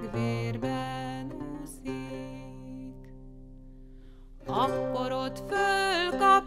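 Renaissance lute playing a solo passage, plucked notes ringing and dying away. About four and a half seconds in, a woman's voice comes back in singing the Hungarian folk ballad.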